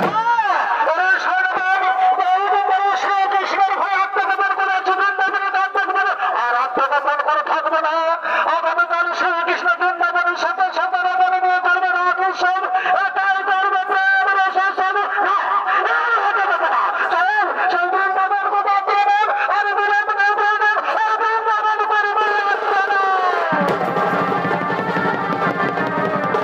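Chhau dance band's shehnai playing a wavering, ornamented melody alone, without drums. The drums come back in near the end.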